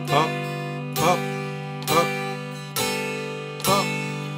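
Electric guitar strummed with single upstrokes across the open strings, five even strums about a second apart, each left ringing into the next.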